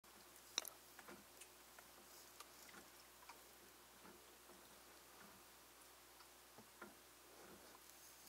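Near silence, with a few faint, scattered small clicks and ticks.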